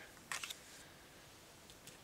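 Mostly room tone near silence, with a faint, brief rustle and a few small clicks of paper cards being handled on a tabletop about half a second in.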